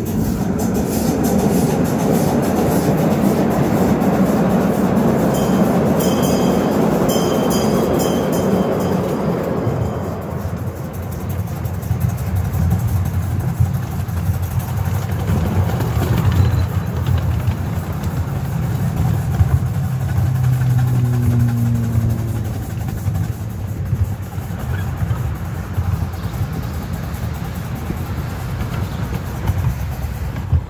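A ride-on miniature train running along its track, its wheels rumbling over the rails with scattered clicks. It is loudest for the first ten seconds, then settles to a steadier low rumble.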